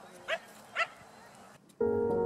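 Two short pitched yelps about half a second apart, then background music with bell-like held tones starts near the end.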